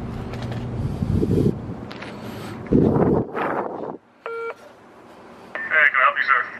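A short electronic beep from a Stentofon intercom call station about four seconds in, with a brief warbling sound near the end. Before it come a steady low hum and two louder scuffs.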